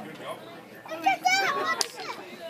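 A young child's high-pitched voice calling out about a second in, over quieter voices, with a sharp click near the end.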